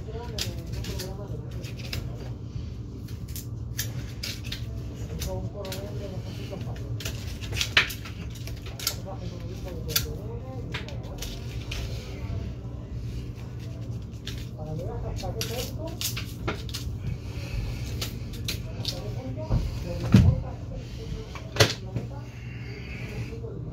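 Butcher's knife working through a hanging leg of veal: scattered clicks, scrapes and knocks as the meat is cut and pulled from the bone, with a few louder knocks and a low thud near the end, over a steady low hum.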